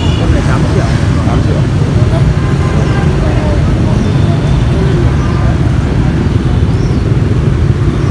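Steady low rumble of street traffic and engines, with faint voices of people talking in the background.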